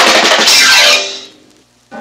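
Loud drum roll ending in a cymbal-like crash, a sound-effect sting for a magic spell, dying away after about a second into a short silence.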